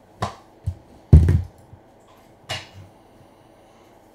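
Clear plastic card holders being handled: a few light clacks, with one heavier thump a little over a second in, as a card is slid out of the stack.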